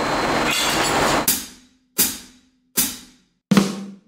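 Percussion in the soundtrack music: a swell that builds, then four sharp drum-and-cymbal hits about three-quarters of a second apart, each ringing away.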